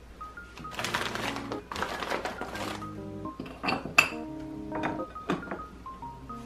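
Soft melodic background music, with ceramic plates being handled over it: a scraping rustle in the first half, then several sharp clinks, the loudest about four seconds in.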